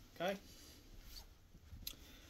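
A man says "okay", then only faint room tone, with one small click near the end.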